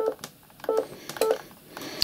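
Yaesu FT-857D transceiver's key beep: three short, identical beeps as its button is pressed to step down through the bands.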